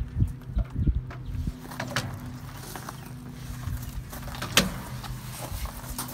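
Hot-stick phasing meter probes being moved and set against energized cable elbows, giving scattered knocks and clicks, most of them in the first second and a half and one sharp click about four and a half seconds in. A steady low hum runs underneath.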